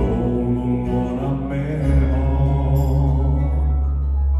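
A live band is playing a ballad. Several male voices hold a long note in harmony over acoustic guitar. A deep bass note comes in about two seconds in.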